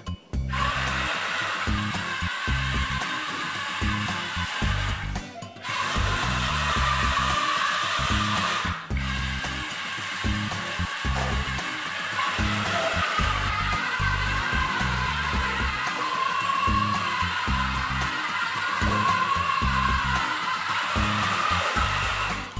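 Small DC gear motors of a tracked robot whirring as it drives forward, back and turns, with brief stops about five and a half and nine seconds in. Background music plays underneath.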